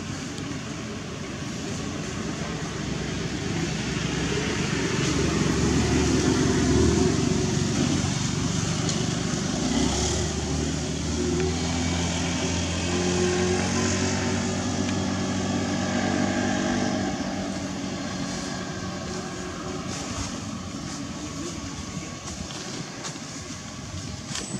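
A motor vehicle's engine passing nearby: a low steady hum that builds over several seconds, peaks, shifts in pitch, then slowly fades away near the end.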